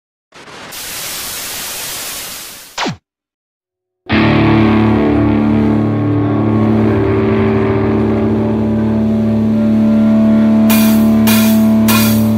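A short swell of hiss ending in a quick falling sweep, a second of silence, then a live rock band's electric guitar and bass holding one steady ringing chord, with a few cymbal hits near the end as the band builds toward coming in.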